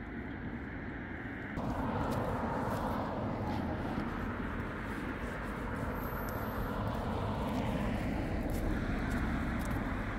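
Road traffic noise, a steady rushing rumble that gets louder about a second and a half in.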